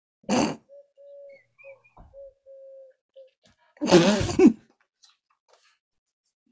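People trying to hold back laughter: a sudden burst of laughter near the start, faint thin squeaks of held-in giggling, then a louder, longer burst of laughter about four seconds in.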